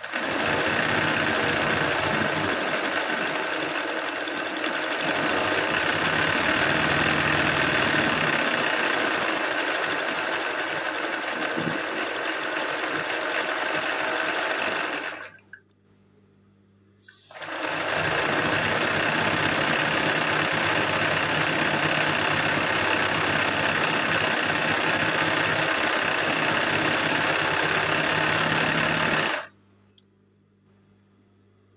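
Sewing machine running fast for free-motion embroidery, satin-stitching petal shapes in thread. It runs steadily for about fifteen seconds, stops for about two seconds, then runs again until just before the end.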